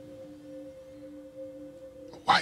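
Quiet underscore music: a steady drone of two low held notes.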